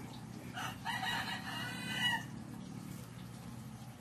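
A rooster crowing once, faintly: one drawn-out call about a second in, lasting just over a second.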